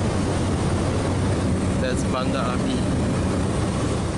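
Steady drone of the Cessna 208B Grand Caravan's single turboprop engine and propeller heard from inside the cockpit in flight, with a brief voice about two seconds in.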